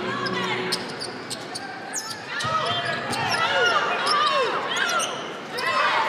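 Basketball being dribbled on a hardwood arena court, with players' sneakers squeaking in short rising-and-falling chirps, thickest through the middle of the stretch.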